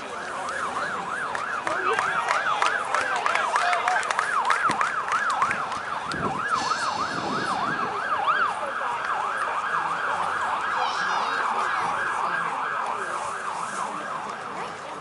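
Emergency vehicle siren sounding a fast yelp, its pitch sweeping up and down about three times a second.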